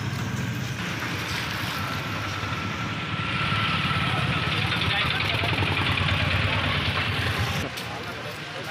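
Outdoor street noise: indistinct voices over a steady low rumble like traffic. It grows louder about three seconds in and drops suddenly just before the end.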